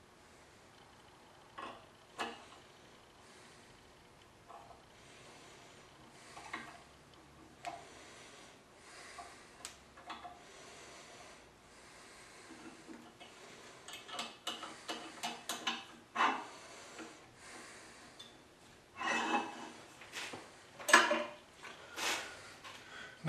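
Small metal clinks, scrapes and rubs of a metal block being shifted, pivoted and reclamped in a drill-press vise. They are sparse at first, then come thick and fast in the second half, with the loudest knocks and scrapes near the end.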